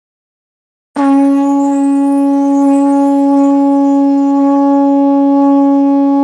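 A conch shell (shankh) blown in one long, steady note that starts about a second in, loud and held at an even pitch, the ritual call that opens a Ganesh invocation.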